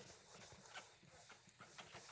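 Blackboard eraser wiping across a chalkboard: faint, quick scrubbing strokes, about five a second.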